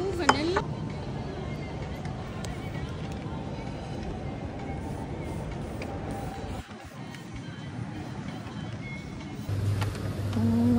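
Shopping-mall background: an even murmur of indistinct voices with music. The level drops suddenly about two-thirds of the way through, then carries on more quietly.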